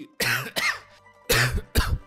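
A person coughing hard in two bouts of two coughs each, about a second apart. The speaker puts it down to a virus.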